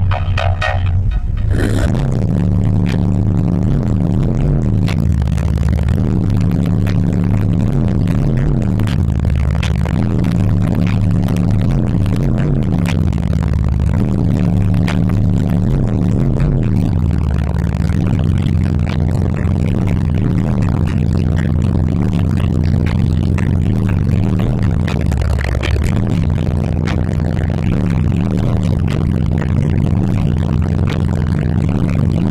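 Bass-heavy music played loud on a car audio system's four Skar ZvX 15-inch subwoofers in a sixth-order enclosure, heard inside the car. Deep bass notes step and slide up and down in pitch without a break.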